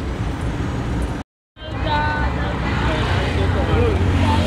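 Road traffic: a steady rumble of cars and motorbikes going past. The sound drops out completely for a moment just after a second in, then the traffic resumes.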